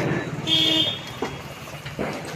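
Diwali ground fireworks: a loud burst fading at the start, then a short whistle-like tone about half a second in and a sharp pop a little after a second.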